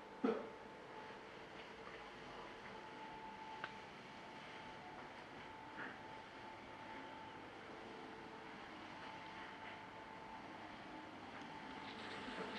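Faint indoor room tone: a quiet steady hum, broken by a single sharp knock just after the start and a few faint clicks later.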